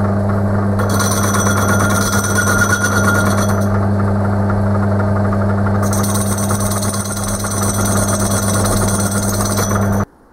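Metal lathe running with a steady motor hum while a cutting tool turns the rim of a spinning wheel true. Two cuts, one about a second in and one from about six seconds, each add a high hiss lasting about three seconds. The sound cuts off suddenly at the end.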